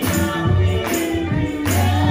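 Gospel song: a young girl singing into a microphone over accompaniment with a strong bass and a steady beat, a little over one beat a second.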